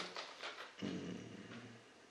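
A man's soft, low hesitation hum of about a second, starting near the middle and fading out, as he searches for his next words.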